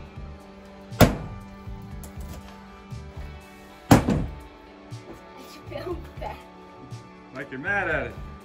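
Two hammer blows on a thin wall panel, sharp single strikes about three seconds apart, over background music.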